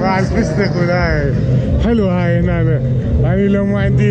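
A man's voice, loud and close, in long drawn-out phrases over a steady low hum.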